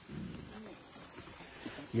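Mountain gorilla giving a faint, low grunting rumble that wavers in pitch, heard in the first half-second, then quiet forest background.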